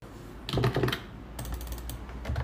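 Typing on a pink keyboard with round, typewriter-style keycaps: two quick runs of clicking keystrokes, one about half a second in and another from about a second and a half.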